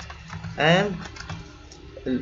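Typing on a computer keyboard: a handful of separate keystroke clicks. A short spoken sound just under a second in is the loudest moment.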